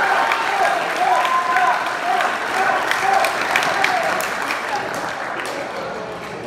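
Audience applauding in a hall, with voices mixed in; the clapping thins out and fades near the end.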